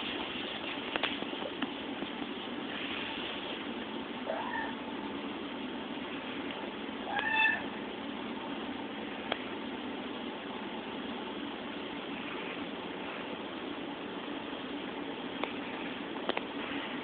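A young kitten meowing twice: a faint, rising mew about four seconds in and a louder, higher mew about three seconds later, over a steady background hiss.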